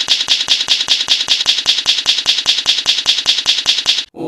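Typing sound effect: an even run of crisp key clicks, about seven a second, that stops suddenly at the end.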